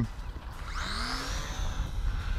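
Electric motor and propeller of a small RC model plane whining as it is hand-launched and climbs away, the pitch rising and then falling, over wind rumbling on the microphone.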